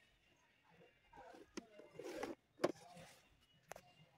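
Faint handling sounds: a few light clicks and short rustles, the way plastic tubing and fittings sound when picked up and turned in the hand.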